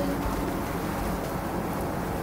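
Jetted bathtub's jets running: a steady churning of water and air with a low pump hum underneath.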